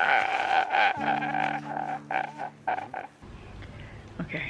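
A man sobbing loudly in gasping, gulping bursts over a steady low held chord; it cuts off about three seconds in, leaving quiet room tone.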